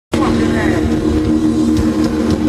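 Live metal band through an outdoor stage PA: a sustained distorted guitar chord rings steadily over a rumbling low end, with crowd voices.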